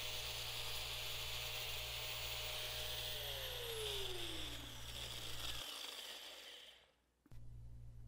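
Angle grinder with a steel cutting disc cutting through an aluminium transmission tail-housing rib: a steady high whine with grinding hiss. About three seconds in the grinder is let go and the motor winds down, its whine falling steadily in pitch until it stops.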